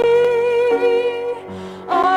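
A woman's voice singing a worship song over instrumental accompaniment, holding one long note with a slight waver that ends about a second and a half in, before the next phrase begins.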